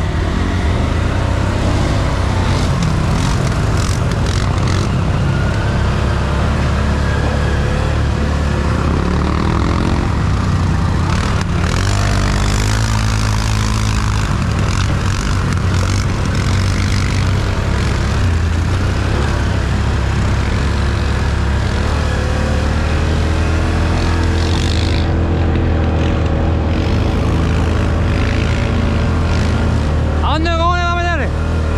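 ATV engine running under way, loud and steady, its pitch rising and falling a few times with the throttle as the quad crosses rough grassland, with a haze of wind and brush noise over it.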